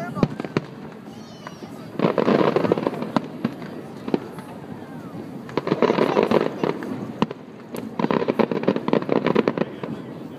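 Aerial fireworks going off: one sharp bang just after the start, then three long spells of rapid crackling pops, about two, six and eight seconds in.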